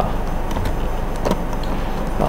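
Steady background hiss and hum of the recording, with two faint clicks about two-thirds of a second apart: keystrokes on a computer keyboard.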